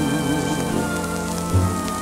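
Orchestra playing sustained chords between sung lines, with a low note entering near the end, reproduced from a 1949 78 rpm shellac record with its surface hiss and faint crackle.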